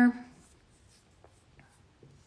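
A few faint clicks and light rustles of makeup brushes and products being handled and set down.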